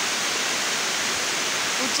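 Heavy rain falling steadily, an even unbroken hiss.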